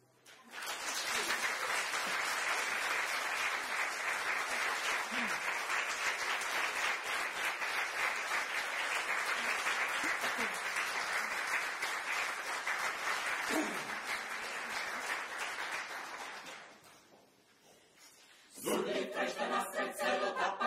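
Audience applauding steadily for about sixteen seconds, then fading out. Near the end a mixed choir begins singing.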